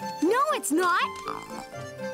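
Two rising-and-falling vocal cries from a cartoon character over steady background music, followed by a short breathy sound.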